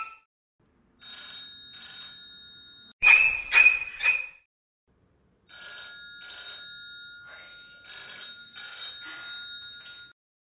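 Mobile phone ringtone ringing in pulses, a couple to three a second. A loud burst of it comes about three seconds in, with quieter stretches of the same ringing on either side and short silent gaps.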